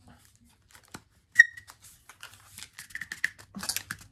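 Clicking and rustling of a plastic toothbrush-and-toothpaste holder being worked with the hands as it resists opening. One sharp click about a second and a half in is the loudest, followed by a run of smaller clicks and crinkles.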